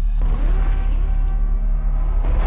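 Cinematic title-sequence sound design: a deep, steady, loud low drone, with a rushing swell of noise that comes in just after the start and builds.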